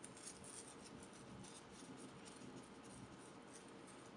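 Very faint papery rubbing of lens paper wiping immersion oil off a glass microscope slide, barely above room tone and fading after the first couple of seconds.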